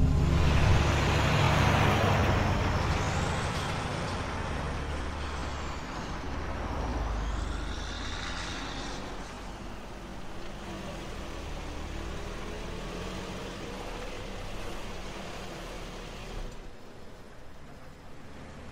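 Road vehicle sound: a loud passing rush at the start that fades away, with a high wavering squeal from about three to eight seconds in, then steadier, quieter motor rumble.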